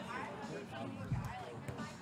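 Faint murmur of distant voices and outdoor crowd ambience, with a soft thump about a second in as the volleyball is served overhand.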